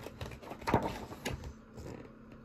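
A hardback picture book's page being turned and handled: a few short paper rustles and light taps, the clearest about three-quarters of a second in.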